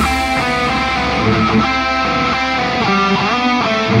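Electric guitar with EMG active pickups, tuned to Drop A, playing a melodic line of picked single notes with a rising slide a little after three seconds in, over a steady low bass rumble and without drums.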